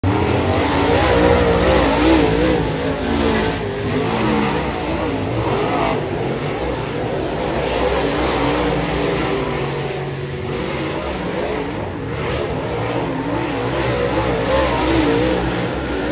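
Dirt late model race cars' V8 engines on a clay oval, their pitch swinging up and down again and again as the cars throttle up and lift off around the track. Two or more engines overlap.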